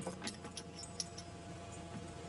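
Faint, light metallic clinks and ticks of laboratory hardware being handled, a few scattered through the moment, over a low steady hum.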